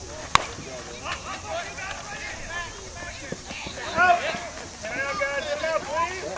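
A single sharp crack of a softball bat hitting the pitched ball about a third of a second in, followed by players shouting and calling across the field, loudest about four seconds in.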